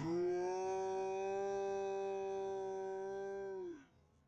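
A man's voice holding one long, steady note for about three and a half seconds, sliding down slightly in pitch as it stops.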